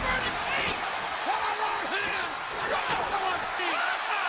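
Wrestling broadcast audio: a commentator talking over steady arena crowd noise, with a thud of a body hitting the ring right at the start.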